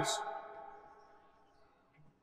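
A man's voice trailing off at the end of a spoken phrase, its last drawn-out sound fading away over about a second, then near silence.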